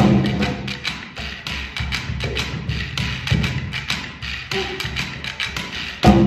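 Hand-drum ensemble of cajóns and congas. The loud full groove drops about half a second in to a quieter passage of light, quick, evenly spaced hand strikes, roughly four or five a second.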